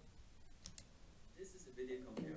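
A few faint, sharp computer clicks in near silence as playback is started, then faint music beginning to come in near the end.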